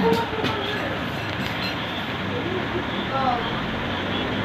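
A cough right at the start, then a steady rushing background noise with a few faint, short vocal sounds about three seconds in.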